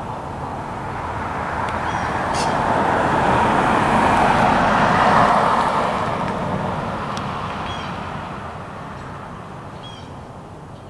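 A road vehicle passing by: a broad rushing noise that swells to its loudest about halfway through and then fades away.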